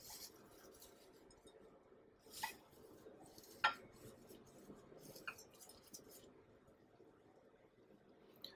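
Faint rustling of shredded coconut as a gloved hand presses a battered shrimp into it in a glass bowl, with a few light clicks, the sharpest a little past the middle.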